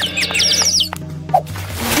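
Background music with a quick run of short, high, falling squeaks in the first second, a cartoon-style squeak effect, then a whoosh near the end as the scene-change effect.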